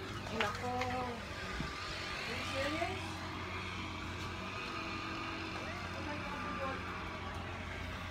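Steady low hum of a motor vehicle running, with a haze of road noise that swells slightly mid-way, and faint voices in the first few seconds.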